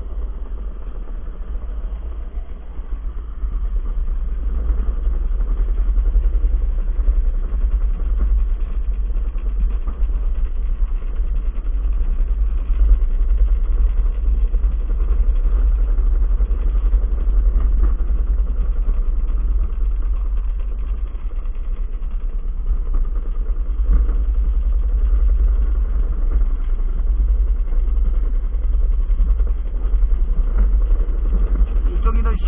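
Gravity luge cart rolling fast down a concrete track: a steady, deep rumble of the wheels on the rough surface, heard through a camera mounted on the cart, growing louder a few seconds in.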